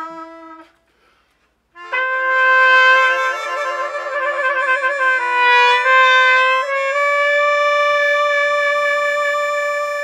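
Trumpet and melodica playing a slow melody together in unison. A note fades out, there is about a second of silence, then the two come back in together, move through a few notes and hold one long note near the end.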